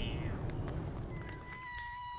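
A cat gives one long, level meow starting about a second in, after a low rumble on the microphone.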